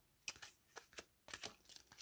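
Faint hand-over-hand shuffling of a deck of large oracle cards: an irregular run of short card slaps and swishes, several a second.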